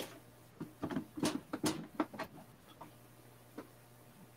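Irregular knocks, clicks and rattles from the wood and cast-iron parts of an antique treadle sewing machine table, jiggled while screws are worked out of it with a screwdriver. The clatter is bunched in the first half, with one more click near the end.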